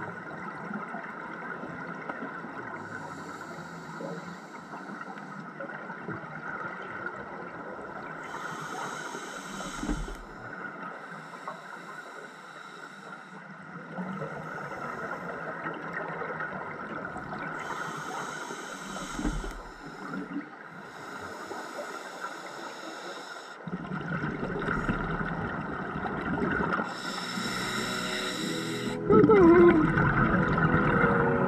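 Underwater sound of scuba divers breathing through regulators. Exhaled bubbles rush out in bursts of about two seconds, every four to five seconds, over a steady underwater hum. About a second before the end a much louder sound with sliding tones cuts in.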